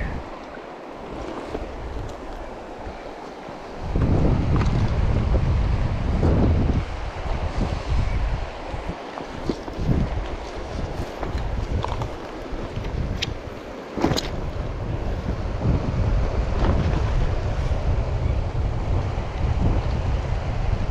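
Gusty wind buffeting the camera microphone, lighter for the first few seconds and then strong and rumbling from about four seconds in, with a couple of sharp clicks near the middle.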